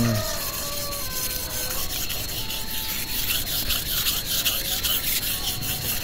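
A knife blade is stroked back and forth on a wet natural sharpening stone: a steady, gritty rubbing of about three strokes a second as the stone bites into the steel.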